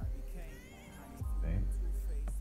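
Background music: a song with a sung vocal over a steady deep bass. The bass drops away briefly about half a second in and comes back about a second in.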